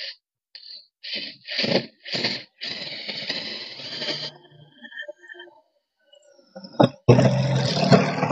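Cordless impact driver with a DeWalt Impact Clutch adapter, its clutch switched off, driving a self-drilling screw through galvanized sheet into steel tubing. It runs in a few short trigger bursts, then a steady run of about two seconds. Near the end comes a loud run of impacting as the screw is overdriven, spinning, crushing its rubber washer and stripping the thread it cut.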